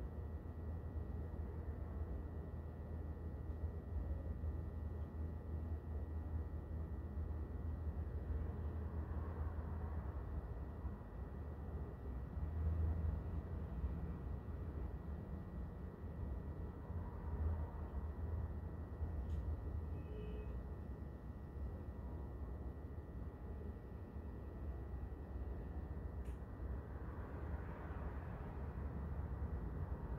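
Slow, soft breaths drawn through one nostril at a time in alternate nostril breathing (nadi shodhana), a few faint breaths several seconds apart, over a steady low rumble of background noise.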